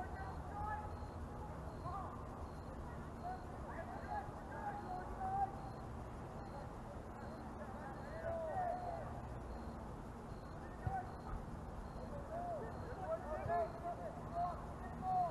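Distant shouts and calls of players and spectators carrying across an outdoor soccer field, over a steady background noise, with a faint short high tone repeating about once a second.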